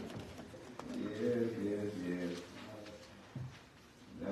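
A man's low voice, quiet, with drawn-out syllables that fade away near the end.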